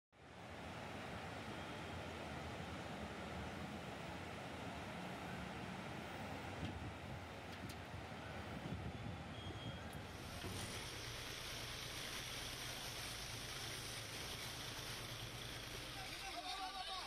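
Floodwater rushing through a street, a steady noisy wash. About ten seconds in it cuts to a tractor's engine running steadily as the tractor drives through the flooded road, with water hiss over it.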